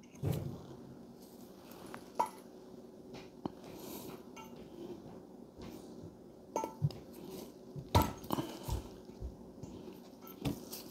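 Scattered light metallic clicks and clinks of a valve stem seal installer drift against an aluminium cylinder head, as a valve stem seal is pressed down over the valve stem by hand. The sharpest knocks come near the end.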